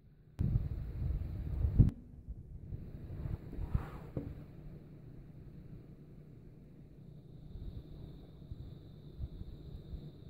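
Wind rumbling on the microphone for about a second and a half, starting and cutting off suddenly, then quieter low noise with a few faint clicks.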